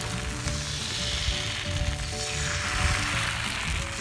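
Bánh xèo batter with shrimp sizzling steadily in a hot pan over a wood fire. Background music with long held notes plays over it.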